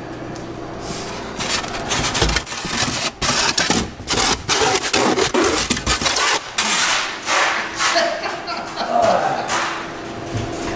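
Styrofoam panel rubbing and scraping against a cardboard box as it is pushed in to fit as a liner, making an irregular scratchy noise in short strokes for most of the stretch.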